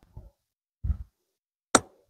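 Golf iron striking the ball in a full swing: one sharp, brief click near the end, after a couple of faint soft knocks.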